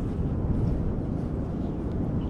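Steady low rumble of wind on the microphone outdoors, with no distinct events.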